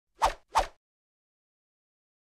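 Animated-logo sound effect: two short pops in quick succession, about a third of a second apart.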